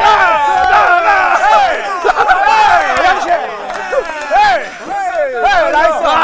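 A group of men shouting and cheering at once, many excited voices overlapping without a break, celebrating a home run.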